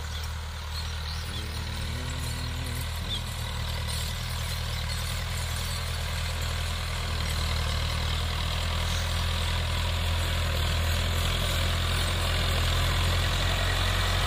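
Farm tractor's diesel engine running steadily under load while pulling a tillage implement through the soil, growing gradually louder as it comes closer.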